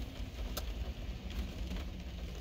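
Steady low rumble of a car cabin's background noise, with a faint click about half a second in.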